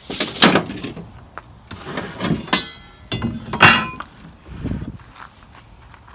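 Hand tools being handled on pine boards: several sharp knocks and clatters, two of them with a brief metallic ring, from a tape measure and an aluminium speed square set down and shifted on the wood.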